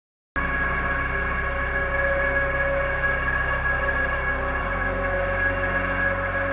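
Tense background music: sustained droning tones that start abruptly out of silence, with a deeper bass layer coming in about four and a half seconds in.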